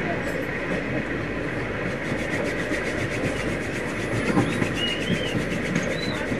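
Moving passenger train heard from inside a carriage: a steady rumble that does not let up. A short high whine rises and falls about five seconds in.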